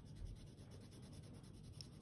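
Faint scratching of a watercolour pencil shading on textured watercolour paper, in short repeated strokes.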